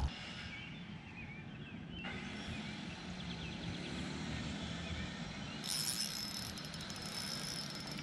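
Low, steady outdoor background on open water, with a few faint high chirps about three seconds in and, from about six seconds in, a fine high hiss crossed by rapid ticking.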